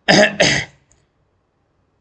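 A man coughs twice in quick succession, within the first second.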